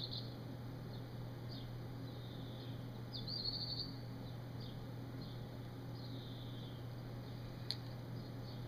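Quiet room with a steady low hum, over which a tobacco pipe being puffed gives faint soft draws and a brief squeaky whistle about three seconds in. A short click near the end.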